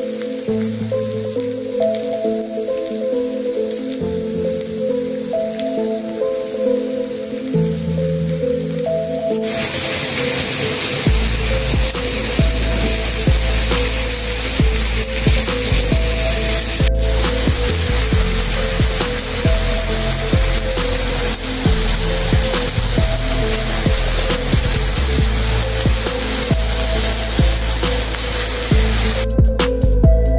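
Beef short ribs sizzling on a hot grill plate, with the sizzle growing much louder about ten seconds in and stopping shortly before the end. Background music plays throughout.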